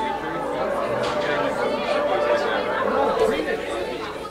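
Many people talking at once in a hall, overlapping conversations with no single voice standing out.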